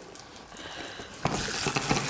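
Food sizzling in a hot pan on the stove, a steady hiss that suddenly gets much louder about a second in.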